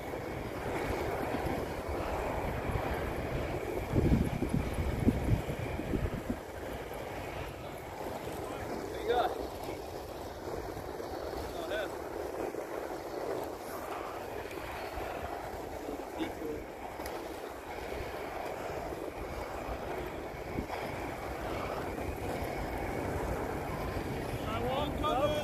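Inline skate wheels rolling steadily over pavement, with wind buffeting the phone's microphone in low gusts about four to six seconds in.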